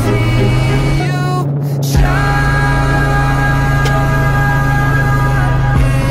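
Background pop music with a steady bass; the high end drops out briefly about a second and a half in, and the music comes back in fully at two seconds.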